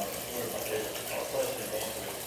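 Indistinct murmur of voices in a small room over a steady hiss, with no instruments playing.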